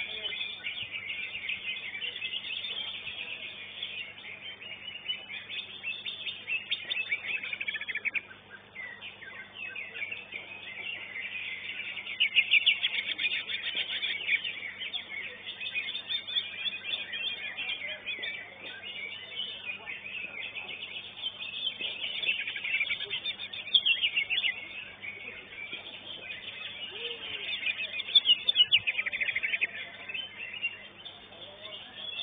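A cucak ijo (green leafbird) singing in a long, fast run of chattering, trilling phrases, louder in bursts about twelve seconds in, near twenty-four seconds and again near the end. A faint steady electrical hum lies under it.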